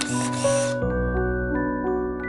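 Camera shutter sound effect, a short two-part click-and-whir lasting under a second, laid over background music; a low bass note comes in as it ends.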